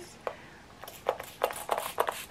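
Setting spray (MAC Prep + Prime Fix+) pumped from a mist bottle onto the face: a quick run of short sprays, starting about a second in.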